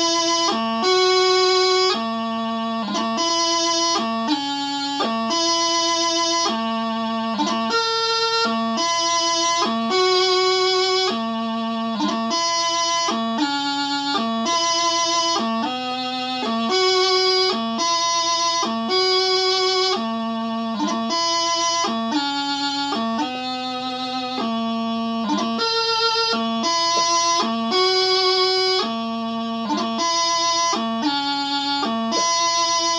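Practice chanter playing a slow piobaireachd melody: held notes of about a second each, linked by quick grace-note embellishments, with no drones sounding.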